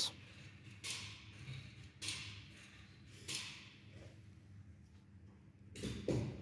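Quiet background with a low steady hum and four faint, short sudden sounds, each fading out over about half a second, the last and loudest near the end.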